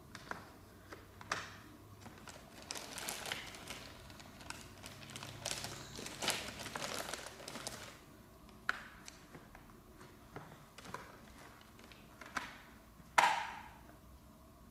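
Clear plastic bag crinkling as a small child rummages in it for plastic alphabet letters, followed by a few light clicks of the plastic letters and one sharper plastic knock near the end.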